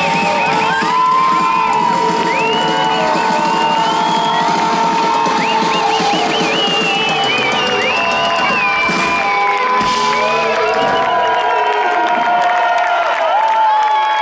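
A rock band playing live at the close of a song: a long held note rings over the music while the crowd cheers and whoops. The band's low end drops away about ten seconds in.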